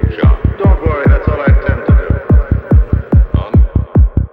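Progressive Goa psytrance: a deep, pounding kick-and-bass pulse at about four to five hits a second, with warbling electronic tones over it in the first half.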